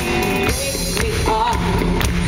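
A live pop-rock band playing loudly: electric guitars, bass and drum kit. A woman's singing voice comes in about halfway through.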